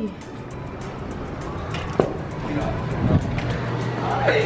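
A single sharp click about two seconds in, as a glass door is passed through, over faint voices and room noise. A low steady hum comes in near the end.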